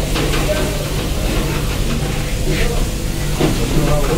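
Busy street-market ambience: a steady low rumble with indistinct voices of people around.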